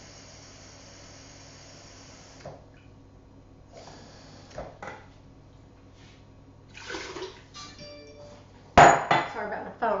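Kitchen tap running into a measuring cup for about two and a half seconds, then shut off. Scattered knocks and clinks of kitchenware follow, then a phone's short electronic tones and a loud clatter near the end.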